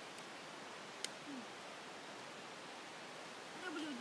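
Steady, even outdoor background hiss, with one sharp click about a second in. A person's voice begins near the end.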